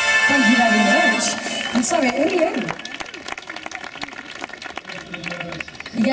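A band's held closing chord breaks off about a second in, with a voice over it through a stage PA. Then light applause from the audience goes on, quieter.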